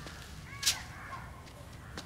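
Quiet room tone with a single short, sharp snap about two-thirds of a second in.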